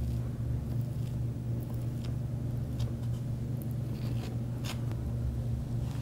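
A steady low hum of background equipment, with a few faint light scrapes as a knife smooths buttercream icing over a cake.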